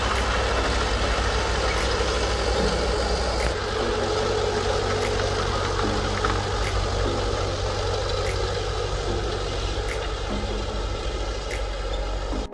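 A tracked snowcat's engine running steadily as it drives slowly over packed snow, with a constant low hum and scattered light clicks.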